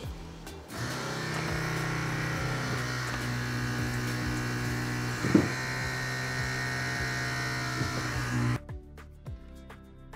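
BMW E90 335i DSC hydraulic unit pump motor running under INPA's bleed routine, a steady electric buzz pushing brake fluid through the right-rear circuit. It cuts off suddenly near the end. Background music plays underneath.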